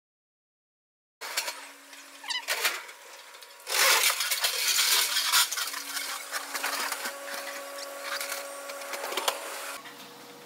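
After about a second of silence, an electric pallet jack moving over a concrete warehouse floor: a steady motor hum with rattling and clattering, loudest for a couple of seconds about four seconds in.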